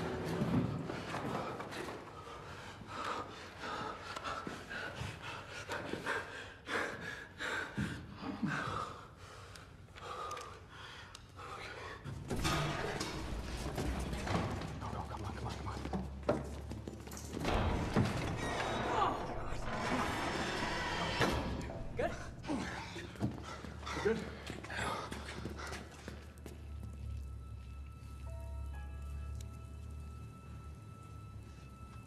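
Film soundtrack of a tense chase: a dark score with a low drone under repeated thuds and knocks, loudest in the middle. It thins out to a few held high notes near the end.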